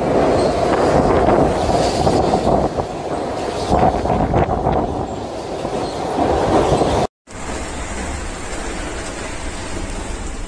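Cyclone-force wind and heavy rain, a loud, gusting roar buffeting the microphone. About seven seconds in the sound cuts out for a moment, then resumes steadier and slightly quieter.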